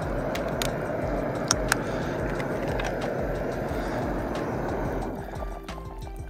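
Camp stove burner running under a pot of simmering soup, cutting off about five seconds in as the heat is shut off. Background music plays underneath.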